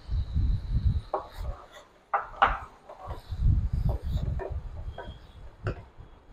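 A wooden spatula stirring pureed tomato into cooked cabbage in a kadai, with wet scraping and irregular clicks and knocks against the pan.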